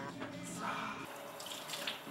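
Water running from a sink tap as hands are washed under it. A steady low hum runs underneath until about a second in.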